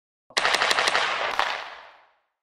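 Logo-transition sound effect: a quick run of four sharp cracks within about half a second, inside a loud noisy rush, then one more crack, fading out over about half a second.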